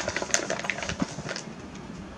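Cosmetics packaging being handled: an irregular run of small clicks and crinkly rustles, busiest in the first second and a half, then thinning out.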